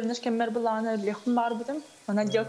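A young woman speaking in short, continuous phrases, heard over a video-call link.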